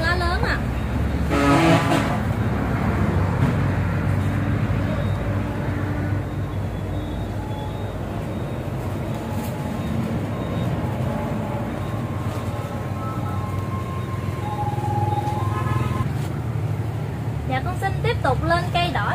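Steady low rumble of background traffic. A short horn-like blare comes about one and a half seconds in, and brief faint tones and voice-like sounds come and go later.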